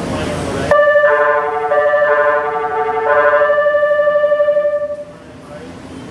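A short electronic melody chime over the station's loudspeakers, several clear notes changing step by step and pulsing in its final long note. It cuts in sharply about a second in and stops about five seconds in, over low platform rumble at the start.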